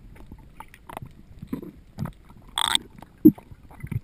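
Underwater knocks from a freediver pulling hand over hand along a dive rope, picked up through the camera's waterproof housing, roughly one every half second. There is a brief high squeak a bit past the middle, and the loudest knock comes near the end.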